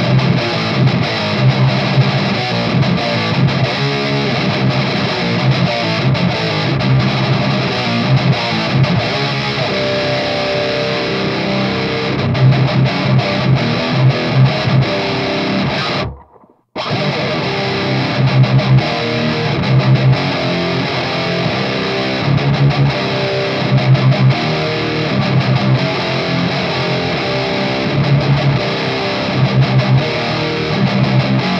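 Electric guitar played through the Haunted Labs Old Ruin distortion pedal, a heavily distorted tone voiced after 90s doom and death metal, riffing on low chugging notes. Just past halfway the playing stops dead for about half a second, then picks up again.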